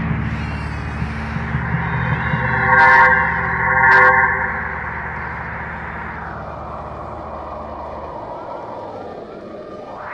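Keyboard synthesizer playing an eerie sound-effect intro: a low drone with a whooshing sweep that rises and falls. Two loud chord stabs come about a second apart around three seconds in, and the drone stops about eight seconds in.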